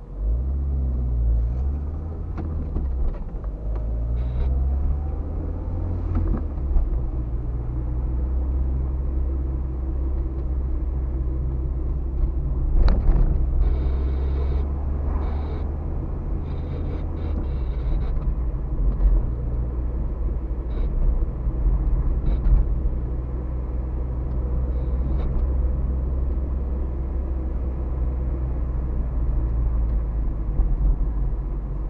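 Car engine and road noise heard inside the cabin from a dashcam: a low, steady drone, with the engine note rising in pitch in the first few seconds as the car gathers speed.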